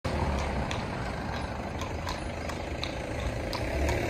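A horse pulling a carriage over cobblestones: scattered, irregular hoof clops over a steady low rumble.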